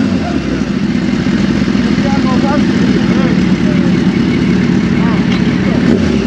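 Inline-four superbike engines with full aftermarket exhausts idling steadily while warming up, the note settling down from a rev right at the start.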